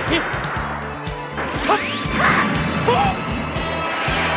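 Animated battle sound effects: a string of sharp blaster shots and crashing impacts, with a rising whine about one and a half seconds in, over background music.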